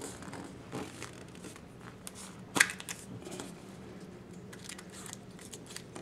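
Yellow plastic Kinder Surprise capsule being pried apart by hand. Quiet fumbling and small clicks, with one sharp click about two and a half seconds in as it comes open, then faint crinkling of the paper instruction sheet wrapped around the toy.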